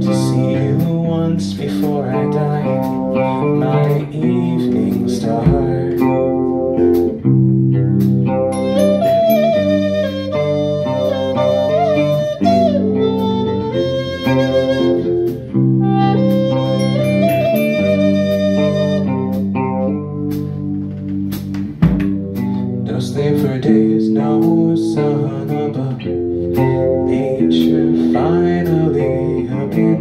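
Live rock band playing an instrumental passage: electric bass, drum kit and guitar. Twice in the middle, a bright lead line is played on a small handheld wind instrument at the microphone.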